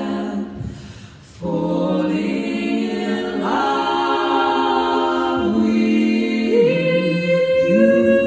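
Women's barbershop quartet singing a cappella in four-part close harmony, holding sustained chords. The singing breaks off briefly about a second in, then comes back on a new chord, with the chords changing every second or two after that.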